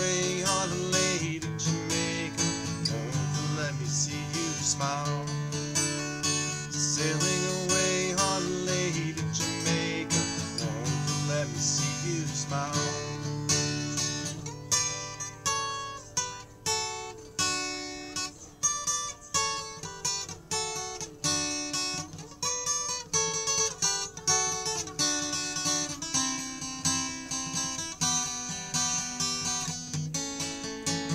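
Solo acoustic guitar playing an instrumental break. Full strummed chords ring for about the first half, then it turns to single picked notes, each struck and left to die away.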